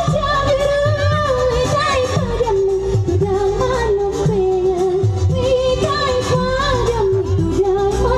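A woman singing into an amplified microphone over electronic keyboard backing with a regular beat: a live dangdut-style performance.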